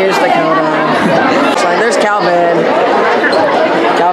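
Loud chatter of many young voices talking over one another, a babble with no single clear speaker.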